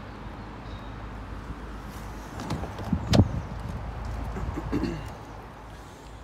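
A single sharp click about three seconds in, over a low rumble of movement: the Jeep Renegade's door latch as the door is opened to get into the cabin.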